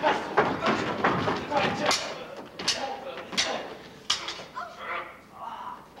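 Stage swords clashing in a fight: a run of sharp metallic strikes, four clear ones about two-thirds of a second apart from about two seconds in, with voices underneath.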